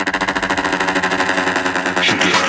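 Electronic dance music from a DJ mix: a held synth chord chopped into a very fast, even buzzing stutter, a rapid roll of the kind used in a build-up.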